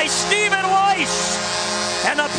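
Arena goal celebration for a home goal: music with steady held tones under an excited voice exclaiming.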